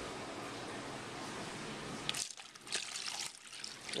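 Tap water poured from a pitcher into a plastic tub over a rusty tool, splashing and trickling. Steady for about two seconds, then broken into separate splashes.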